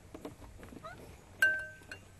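A single sharp clink of tableware about one and a half seconds in, ringing on briefly with a clear tone. Fainter short clatters and small chirp-like calls come before and after it.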